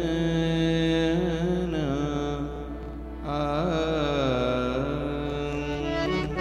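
A man singing a Gujarati devotional kirtan in long, ornamented held notes with wavering pitch, in two phrases with a short dip between them about halfway through, over a steady low drone.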